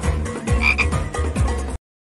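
Background music with a steady bass beat, with a short two-note frog croak about two-thirds of a second in. The sound cuts off abruptly near the end.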